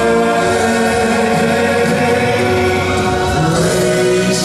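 A man sings a gospel song live over musical backing, holding long sustained notes.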